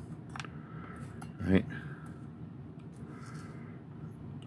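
Faint clicks and a short rustle of a small die-cast metal car chassis being handled and picked up off a workbench.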